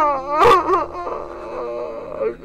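A woman wailing in grief. Her cry falls in pitch at the start, breaks into short sobs about half a second in, then trails off into a softer, lower moan.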